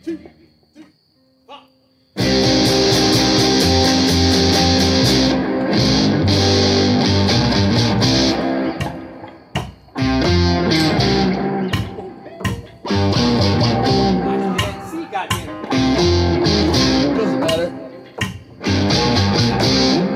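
A live trio of upright bass, electric guitar and acoustic guitar starts up about two seconds in and plays an instrumental intro loudly, in phrases broken by several brief stops.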